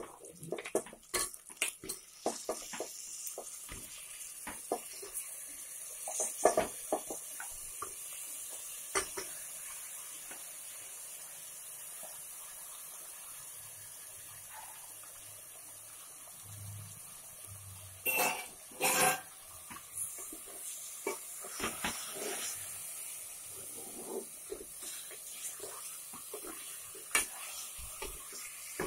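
Spatula knocking and scraping against the sides of an aluminium pressure cooker as frying onions and then raw mutton pieces are stirred, over a steady hiss. Two louder scrapes come about two-thirds of the way through.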